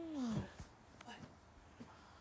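A child's voice drawing out a falling "ohh" for about half a second, followed by a few faint clicks.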